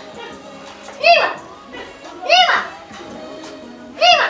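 A child's voice calling out twice, each call a drawn-out cry that rises and falls in pitch, over faint background music.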